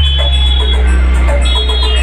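A tall vehicle-mounted DJ speaker-box rig playing loud electronic dance music, with deep steady bass under a high synth melody.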